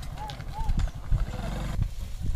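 Loaded bullock cart rolling along a dirt track: a steady low rumble with irregular knocks, and two short high chirp-like calls in the first second.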